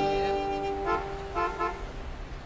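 The song's last chord of acoustic guitar, slide guitar and fiddle rings out and fades, with two short car horn toots about a second and a second and a half in.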